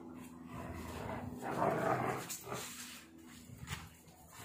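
Dog growling while pulling on a rope tug toy in play, loudest about halfway through, with a few short knocks near the end.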